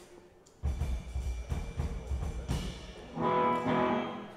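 Amplified band instruments being sounded on stage between songs: a low, uneven bass rumble from about half a second in, then a loud sustained pitched note for the last second.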